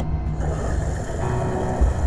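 Background music with a heavy low beat, and a rushing hiss that comes in about half a second in and holds through the rest.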